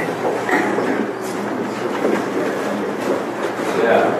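Crowd murmur in a busy room: many indistinct voices blending into a steady hubbub, with a few faint clicks.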